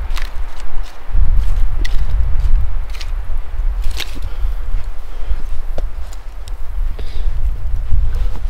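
Charred campfire logs being shifted around in the fire: scattered sharp knocks and crackles of burnt wood and embers, loudest at about 4 s, over a loud low rumble.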